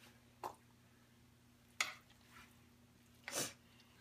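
Serving spoon scooping green bean casserole out of a glass baking dish into a plastic bowl: three brief soft clicks and scrapes, one about a second in and one near the end. A faint steady low hum runs underneath.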